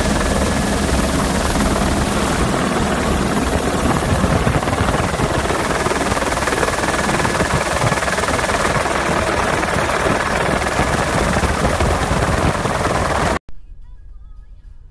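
Helicopter noise: loud, steady rotor and engine noise that stops abruptly near the end.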